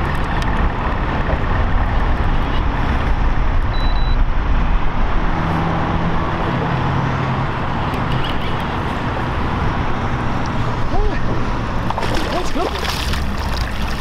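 A striped bass splashing at the surface beside the boat as it is brought up near the end, over a steady, loud low rumble.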